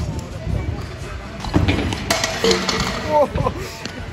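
A freestyle stunt scooter rolls on a concrete skatepark floor, then falls in a failed trick: the scooter hits the ground with sharp clattering impacts about one and a half and two seconds in. Voices follow with short reactions.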